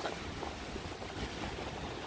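Steady outdoor background noise with no distinct events: a low rumble of wind on the phone's microphone over the sea at the harbour.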